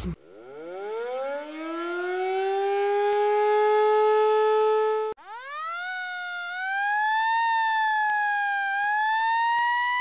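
Siren sound effect: a siren winds up from a low pitch to a steady high tone, then cuts off suddenly about five seconds in. A second siren starts at once, rises quickly and then wails slowly up and down.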